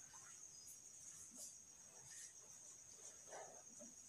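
Near silence: faint strokes of a marker writing on a whiteboard, over a steady faint high-pitched tone.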